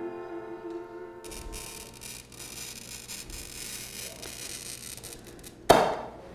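Small choir and piano ending on a held chord, cut off abruptly about a second in, followed by low room noise. Near the end, one short, loud scratch of a glass cutter scoring a sheet of glass.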